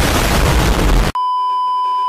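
A loud burst of harsh static that cuts off sharply about a second in, followed by a steady, high censor bleep held at one pitch.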